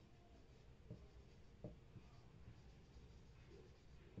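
Faint sound of a marker pen writing on a whiteboard, with two light ticks about a second in.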